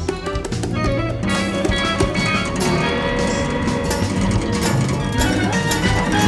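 Free jazz improvisation by a quartet of keyboard, balalaika, accordion and electric guitar, with busy plucked-string notes over sustained low tones.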